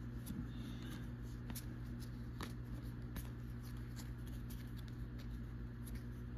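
Topps baseball trading cards being flipped through by hand, one card after another, each giving a faint flick about once or twice a second, over a steady low hum.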